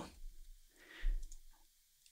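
A few faint clicks from computer keys and mouse, with a soft low thump about a second in.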